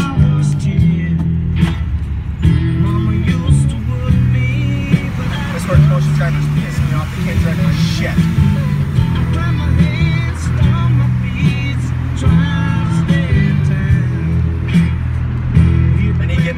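A rock song with guitar and a singing voice playing on the truck's stereo, loud and continuous, with the truck's road noise underneath.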